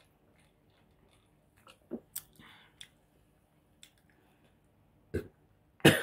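A few gulps and swallows while drinking a fizzy drink from a can, with a short burp about five seconds in.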